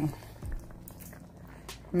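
A hand moving pieces of pork rib in a metal pot: faint, soft handling sounds, with a dull thump about half a second in and a sharp click near the end.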